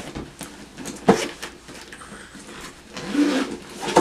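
A fabric-covered makeup train case being handled and opened, with rustling and a sharp knock about a second in and another click near the end.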